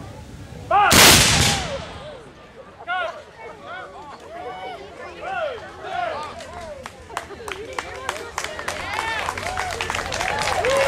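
A salute volley from a line of black-powder muskets fired high into the air, going off nearly as one loud report about a second in. Voices follow, and scattered applause from the onlookers picks up near the end.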